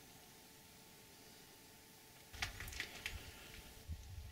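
Faint, near-silent mine-tunnel room tone, then from a little past two seconds a few sharp clicks and scuffs over a low rumble: footsteps on the rocky rubble of the tunnel floor.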